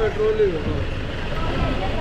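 A bus engine idling with a steady low rumble, while other people talk in the background.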